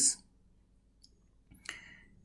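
A pause that is mostly quiet, with a faint click about a second in and a short, soft click near the end.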